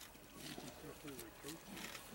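Spotted hyenas calling while they feed at a carcass: a run of short, low calls that bend up and down in pitch, broken by sharp cracking clicks from the feeding.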